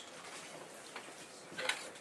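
Faint clicks and ticks from a small spool of fly-tying wire being handled in the fingers, with a sharper cluster of clicks near the end.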